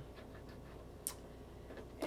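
Quiet room tone with a single sharp plastic click about a second in, a bottle cap being worked open by hand, and a few faint handling ticks.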